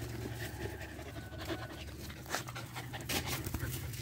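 Dogs panting, with a few short sharp clicks over a low steady hum.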